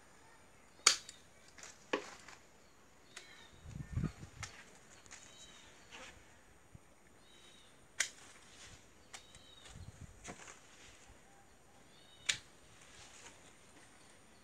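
Pruning shears snipping through woody gardenia (kaca piring) branches: four sharp, separate snips spread out over several seconds, the loudest about a second in. A dull handling thump comes in the middle.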